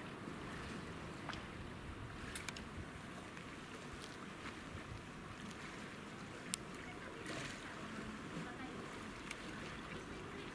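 Calm sea water lapping gently against a concrete quay, a steady low wash with a few faint clicks.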